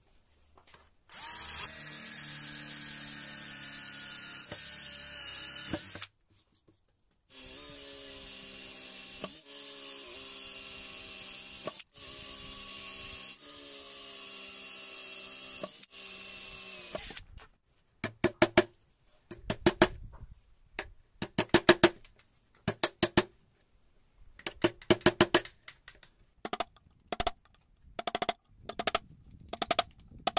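A 12V cordless drill boring a row of holes into a wooden plank with a twist bit, running at a steady pitch in several bursts of a few seconds with short stops between holes. From about 18 seconds on, quick clusters of sharp knocks as a small chisel is worked into the wood.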